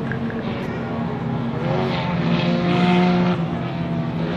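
Several classic Mini racing cars' A-series engines running at racing speed as they pass on the circuit. The engine note swells to its loudest about three seconds in, then eases off.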